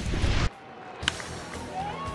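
Loud ballpark crowd noise cut off abruptly about half a second in, then quieter stadium ambience with a single sharp crack of a bat hitting the ball about a second in.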